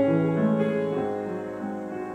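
Grand piano playing a slow, soft accompaniment passage, its chords held and gradually fading.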